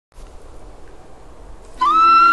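Opening of a karaoke backing track: a faint hiss, then near the end a flute melody note slides up into pitch and is held, over a soft lower accompaniment.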